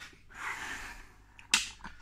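A soft breathy hiss while chewing, then one sharp click about one and a half seconds in as the camera is handled and moved.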